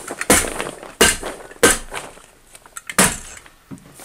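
Hammer stapler struck against wooden wall studs about four times at uneven intervals, driving staples through 6-mil polyethylene vapor barrier sheeting.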